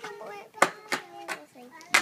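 A young child's voice, cut across by three or four sharp clicks about a third of a second apart, which are the loudest sounds.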